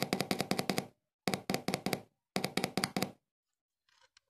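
A small speaker crackling in three bursts of rapid pops, each under a second long, as its wire is rubbed against a 6 V battery terminal, making and breaking contact.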